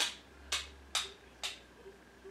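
Four quick brushing swishes about half a second apart: an eyeshadow blending brush stroked across the eyelid.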